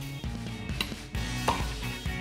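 Two light knocks on a chopping board, about a second in and less than a second apart, as seeds are shaken out of a chili. Background music plays underneath.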